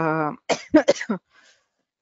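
A woman's held hesitation sound trailing off, then a few short throat-clearing coughs about half a second to a second in.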